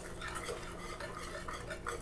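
Wire whisk lightly stirring a thick ketchup and brown-sugar sauce in a small metal saucepan: faint scraping with a few light clicks of the wires against the pan.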